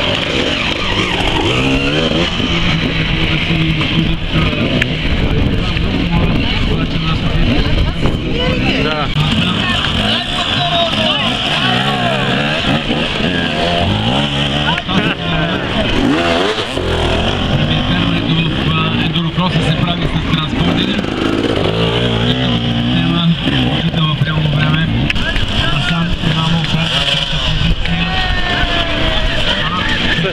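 Enduro motorcycle engines revving up and down in repeated bursts under load as the bikes claw over tyres and up a dirt climb.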